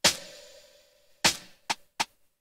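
Layered electronic snare group from a pop beat playing back solo: stacked snare, rim and noisy clap samples heavily processed with saturation, transient shaping and OTT. About four sharp hits, the first ringing out in a reverb tail for about a second.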